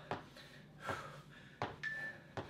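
Feet landing on rubber gym flooring during marching high knees: three soft thumps, a little under one a second.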